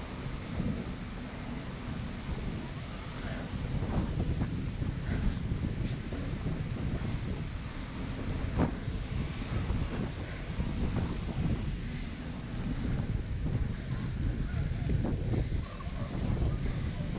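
Wind buffeting the microphone of a camera carried on a moving bicycle, a gusty rumble that rises and falls, with a faint click now and then.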